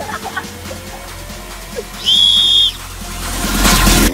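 A single short blast on a referee's whistle about two seconds in, signalling the player to take the kick, over background music. Near the end a rising whoosh builds and cuts off suddenly.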